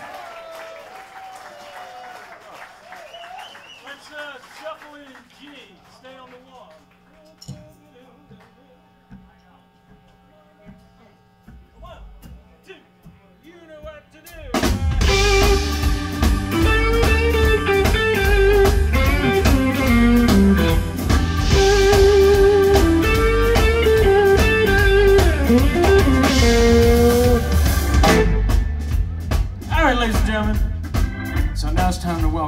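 Live blues band on stage: a quiet stretch of scattered, held guitar notes, then about halfway through the full band comes in loudly with bass and drums and plays until shortly before the end.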